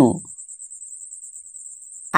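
A voice ends a spoken Hindi sentence right at the start, followed by a quiet pause.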